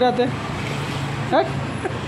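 Low, steady hum of a vehicle engine running, likely one of the parked school buses, under children's voices. About one and a half seconds in, a single short voice rises sharply in pitch; this is the loudest sound.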